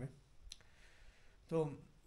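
A quiet pause in a man's talk: one sharp click about half a second in, then a single short syllable from his voice.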